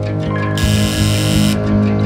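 Background music with guitar over a steady low bass line. About half a second in, a hissing sound effect lasting about a second plays over the music as the correct answer is revealed.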